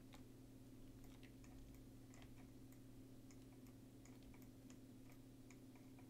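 Near silence: a steady low hum with faint, scattered computer mouse and keyboard clicks.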